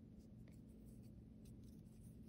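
Near silence: room tone with a few faint, short rustles and ticks from a metal crochet hook working yarn.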